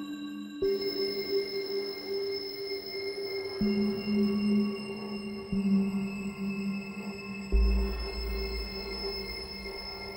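Minimal experimental electronic music: sustained synth tones that shift to new pitches every couple of seconds, with a deep bass tone coming in about three-quarters of the way through.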